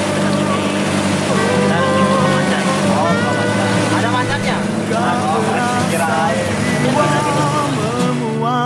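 Boat engine running at a steady pitch as a wooden boat travels under way, with people talking over it.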